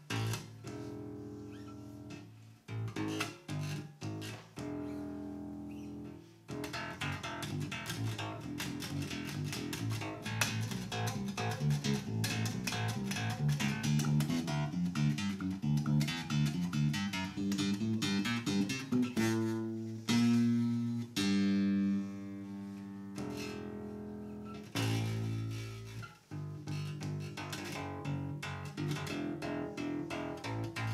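Ibanez TMB100 Talman electric bass played solo with the fingers: a line of plucked notes that gets quicker and busier in the middle, with a few longer held notes a little past twenty seconds in.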